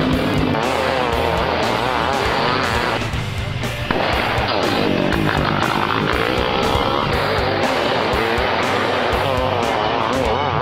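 Several mini outlaw race car engines revving up and down as they lap a short dirt oval, the pitch rising and falling continuously, with music playing along with them.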